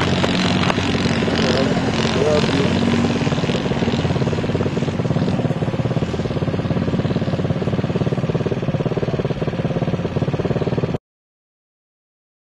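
Quad bike engines running steadily as the quads race along a dirt track, a continuous engine drone. The sound cuts off abruptly about eleven seconds in.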